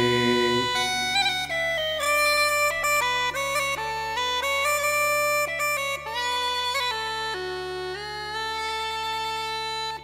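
Bagpipes playing a melody of changing notes with quick grace notes over a steady drone, in an instrumental break of an Irish folk song. A held sung note ends within the first second.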